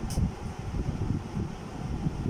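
Low, uneven rumble of air buffeting the microphone, with a faint click just after the start.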